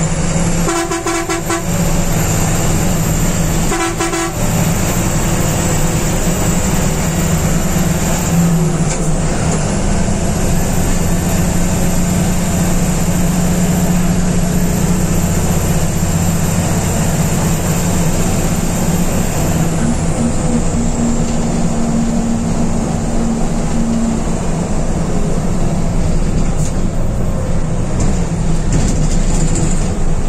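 Steady engine and road noise of a sleeper bus heard from inside its driver's cab, with two horn blasts near the start, the first about a second long and the second a short toot about three seconds later.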